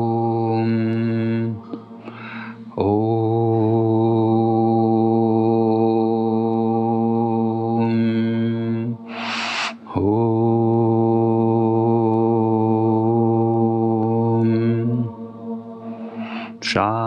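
A man's voice chanting long, drawn-out Oms on one low, steady note, each held for several seconds and closing into a hum. He takes a quick breath between them, about two seconds in and again near ten seconds.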